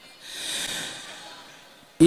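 A Quran reciter's deep breath drawn in close to a handheld microphone, taken between phrases of recitation. It swells about half a second in and fades away over the next second.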